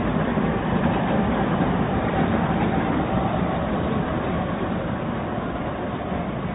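An Audi Q5 SUV driving slowly along a cobbled street: a steady engine and tyre rumble that eases slightly near the end as the car moves away.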